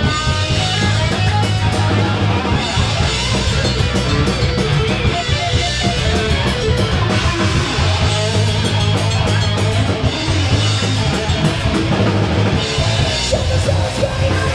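Live metal band playing loud: electric guitar over a drum kit, with drum and cymbal hits throughout.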